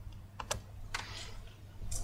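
A few faint, irregular key clicks over quiet room hum, like keys being tapped on a keyboard.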